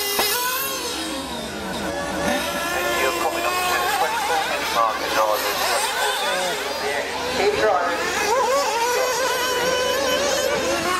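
Several nitro RC buggy engines racing at once, their high-pitched whine overlapping and rising and falling as they rev and lift off through the corners.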